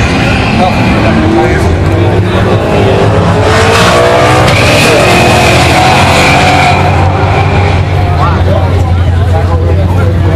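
Drag-race car engines at full throttle accelerating down the strip. The engine note climbs in pitch a few seconds in, then holds loud and steady before easing off, with spectators' voices over it.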